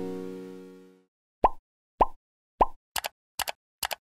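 Synthesizer chord fading out, then cartoon-style pop sound effects: three single pops about half a second apart, each sweeping quickly up in pitch, followed by three quick double pops.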